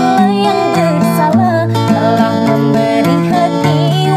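A woman singing a slow melody with wavering, ornamented held notes, accompanied by a man on an acoustic guitar playing bass notes and chords.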